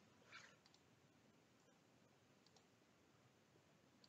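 Near silence, with one faint computer mouse click about a third of a second in.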